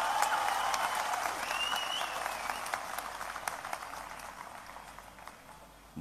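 Audience applauding, fading away gradually over several seconds, with a brief rising whistle about two seconds in.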